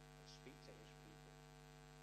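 Near silence under a steady electrical mains hum made of many evenly spaced tones, with a faint voice for about the first second.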